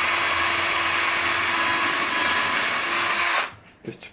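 Cordless drill running at a steady speed as it bores into the edge of an MDF panel without a pilot hole. It stops about three and a half seconds in.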